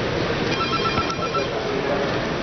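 A short electronic ring, like a phone ringtone: a rapidly pulsing beep lasting under a second, about half a second in, over the steady murmur of a large, busy hall.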